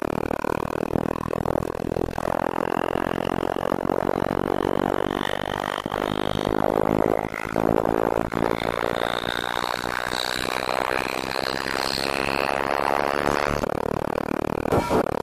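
Experimental electronic music: a dense, grainy drone with a faint high tone that slowly rises in pitch.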